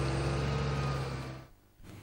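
Wheel loader's diesel engine running steadily with a low hum, fading out about one and a half seconds in.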